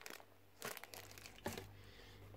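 A small clear plastic bag crinkling as it is handled, with a short run of rustles near the middle and a sharper tick about a second and a half in.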